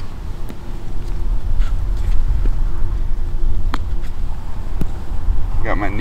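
A few light, sharp clicks and ticks from a tree-stand platform strapped to a tree as weight shifts on it, over a steady low rumble and a faint steady hum. A voice comes in near the end.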